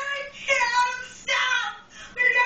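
A woman crying out in distress: high-pitched, wordless wailing cries, two drawn-out cries in quick succession.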